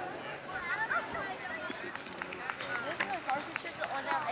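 Hoofbeats of a horse cantering on the soft dirt footing of an arena, a run of short thuds clearest in the second half, under the chatter of spectators' voices.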